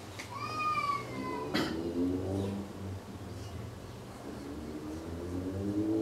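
A cat meowing: one drawn-out, slightly falling meow about half a second in, followed by a sharp click.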